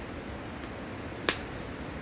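A single sharp click a little over a second in, with a fainter one at the very start, over a steady low hiss.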